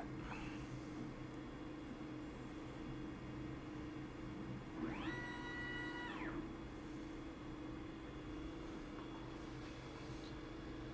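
xTool P3 laser running with a steady low machine hum; about five seconds in, its gantry motors whine up in pitch, hold for about a second and wind back down as the laser head travels across the machine.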